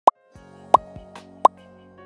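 Three short, loud pops of a text-message sound effect, evenly spaced about two thirds of a second apart, over soft held music notes.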